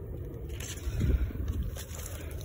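Short scraping and rustling handling sounds as fingers squeeze a small green water plantain seed head and the camera is moved, over a low rumble on the microphone.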